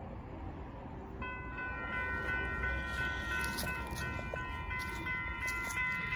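Railroad level-crossing warning bell starting to ring about a second in and ringing on steadily, the signal triggered by an approaching train.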